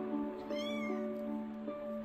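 A two-week-old British shorthair kitten gives one short, thin, high mew about half a second in, its pitch rising then falling, over background music.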